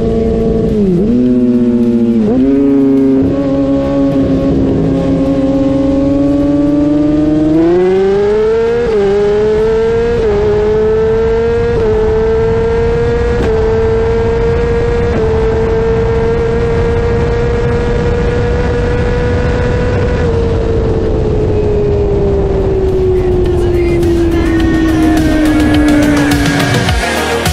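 Kawasaki ZX-10R inline-four sportbike engine at full throttle in a roll race, heard up close from the bike. It dips sharply in pitch twice in the first few seconds as it quick-shifts, climbs again and holds high revs in top gear, then falls steadily in pitch over the last six seconds as the throttle closes and the bike slows.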